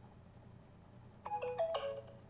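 A short phone notification chime of several quick notes, starting about a second and a quarter in and lasting under a second, as a Bluetooth pairing request comes up on an Android phone.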